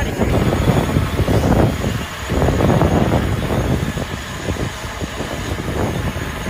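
Gusty wind rumbling on the microphone, over the hum of an eight-rotor hydrogen fuel-cell drone hovering overhead. The rumble swells and dips unevenly, easing a little about two seconds in.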